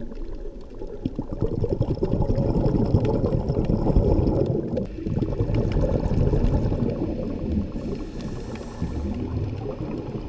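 Underwater sound picked up by the camera: a muffled, low rumble of moving water and bubbling that swells and eases, dipping briefly about halfway through, with faint scattered clicks through it.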